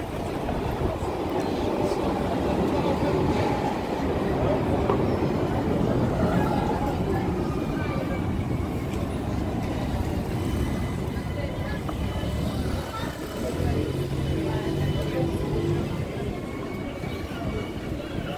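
Busy pedestrian street ambience with passersby talking, and an electric street tram passing close by around the middle, with a faint steady high whine.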